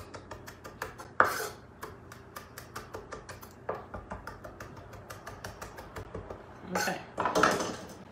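Chef's knife mincing dried sage leaves very fine on a wooden cutting board: rapid light taps of the blade on the board, about five a second, with one harder knock about a second in. Near the end comes a louder scrape of the blade across the board.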